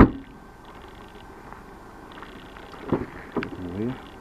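Seat Ibiza hatchback's tailgate slammed shut with one sharp thud. About three seconds later come a couple of lighter clicks as a rear door is opened, and a short murmur of voice near the end.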